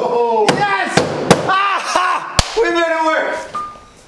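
A man yelling and whooping in excitement, with three sharp smacks through the first half, as the car's electrics come on. A short beep near the end.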